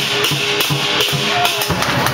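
Chinese lion dance percussion: a big drum with clashing cymbals, playing a steady beat of about four strokes a second.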